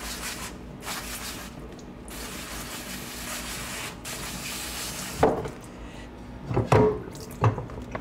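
Pump sprayer wand spraying water onto a plastic scoop coater to rinse off screen-printing emulsion, in several bursts with short breaks over about five seconds. A few sharp knocks follow near the end as the coater is handled in the washout sink.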